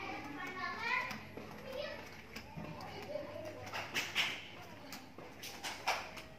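Children's voices calling and chattering, high-pitched and loudest in the first second, with a few short knocks near the end.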